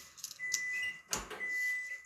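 Handling of a leather sheath being fitted over a small axe head: light rustling and clicks, with a single sharp thump about a second in.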